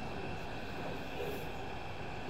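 A steady, even hum and hiss with a faint high whine running under it and no distinct knocks or events.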